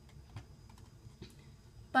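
A few faint, irregular clicks at a computer as web pages are clicked through.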